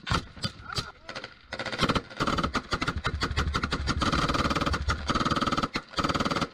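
A few regular knocks, then from about a second and a half in a loud, steady vehicle engine with rapid clatter and a held whine.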